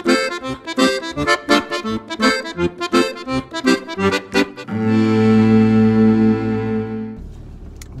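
Accordion music: a quick, lively run of notes that settles about five seconds in on a long held chord, which then fades.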